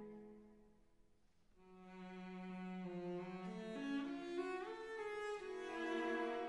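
Background music on bowed strings: a phrase dies away at the start, and after a short lull a new phrase of held notes begins and climbs step by step in pitch.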